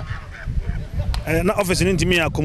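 A man's voice pausing for about a second, with only a low background rumble and a faint click in the gap, then his speech resuming.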